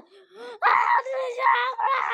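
A child's high-pitched voice making drawn-out, wordless wailing sounds, several in a row, the pitch held fairly level.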